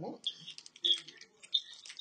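Plastic snack wrapper being handled, giving a few short, scattered crinkles and clicks, after a brief "mm-hmm" at the start.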